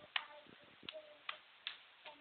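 Four sharp, uneven clicks and taps from hands handling the recording device, the first the loudest.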